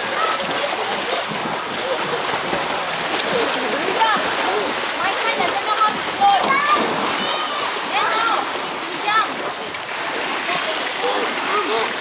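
Steady splashing of children swimming in a pool, with children's high voices calling out over it now and then.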